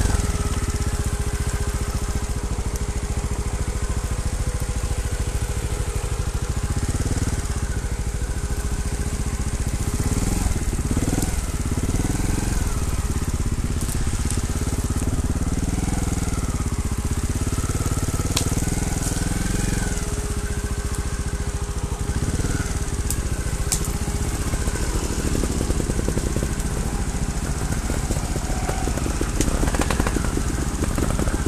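Trials motorcycle engine running at low revs, its pitch rising and falling with small throttle changes.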